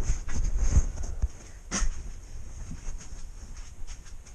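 Movement and handling noise: low thuds and rustling, with a sharp click a little under two seconds in, then quieter small knocks.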